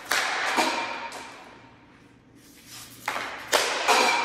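Hockey stick and puck on a plastic training floor: two rounds of one-handed stickhandling and shooting, about three seconds apart. Each opens with sharp knocks of the blade on the puck, followed by a scraping that fades over a second or so.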